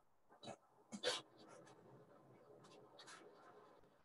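Near silence with a faint hiss and a few soft clicks and rustles, the clearest about a second in.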